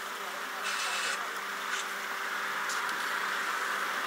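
Steady outdoor background noise with a faint low hum, and a short high hiss about a second in.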